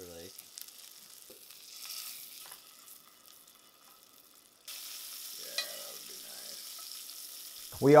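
Steak searing in butter and oil in a cast iron skillet, a steady sizzle that grows louder abruptly a little past halfway.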